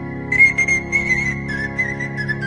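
Pan flute (Romanian nai) playing a doina melody: from about a third of a second in, a run of short ornamented high notes that steps down in pitch near the middle, over steady sustained low accompaniment.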